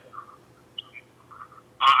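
A pause in a remote meeting's audio: faint steady hum with a few brief, faint chirps. A man's voice starts with a hesitant "uh" near the end.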